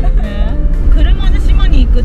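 Steady low road and engine rumble of a moving car heard from inside the cabin, under voices and background music.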